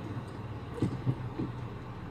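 Car engine idling, heard from inside the cabin as a steady low hum while the car waits at a crossing. About a second in, three short low sounds stand out above the hum.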